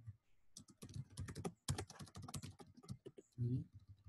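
Typing on a computer keyboard: a fast run of keystrokes that thins out near the end.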